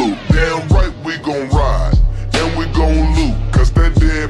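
Chopped and screwed hip hop track: slowed-down rap vocals over heavy bass and steady drum hits.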